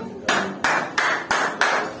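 Metal temple bell struck five times in quick, even succession, about three strikes a second, each strike ringing briefly before the next.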